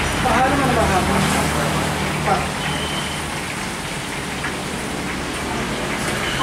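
Indistinct talking, clearest in the first second or so, over a steady hiss and a low hum.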